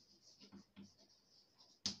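Faint scratching of chalk on a blackboard as a word is written in short strokes, with one sharper tap near the end.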